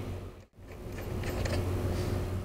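Faint metal clicks of a screw and washers being threaded by hand onto a concrete saw's blade spindle, over a steady low hum.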